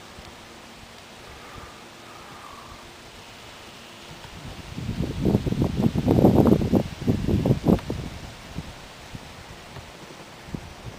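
A loud burst of rustling, buffeting noise right on the microphone, starting about halfway through and lasting some four seconds with a string of sharp peaks. Before it there is only faint, steady outdoor quiet.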